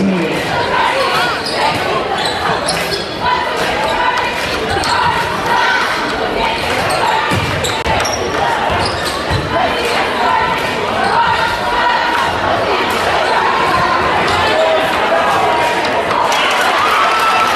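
A live basketball game echoing in a gymnasium: the ball bouncing on the hardwood court, with the voices of players and spectators throughout.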